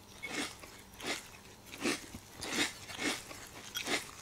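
A person chewing food loudly with the mouth, about six chews at an even pace, from a cartoon soundtrack.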